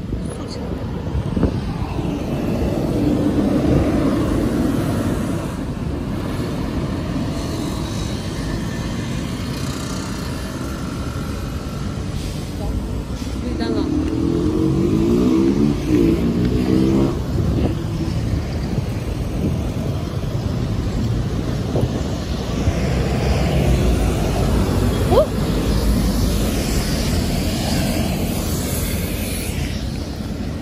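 Road traffic on a busy street: the steady rumble of passing cars' engines and tyres, swelling and fading as vehicles go by.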